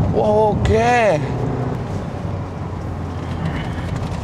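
Steady road and engine noise inside the cabin of a Range Rover Evoque on the move. In the first second there are two short vocal sounds that rise and fall in pitch, hum-like, from a person in the car.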